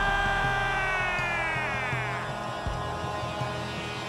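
Arena goal horn sounding one long steady note right after a goal. Over it, the play-by-play announcer's drawn-out goal call slides down in pitch and dies away about two seconds in.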